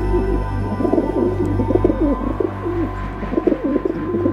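Pigeons cooing again and again in a series of low, wavering calls, with soft background music fading underneath.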